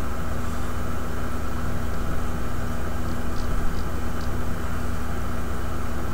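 Steady background hiss with a low electrical hum. A few faint ticks fall about three to four seconds in.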